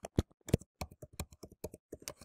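Typing on a computer keyboard: a quick, uneven run of about a dozen separate keystrokes.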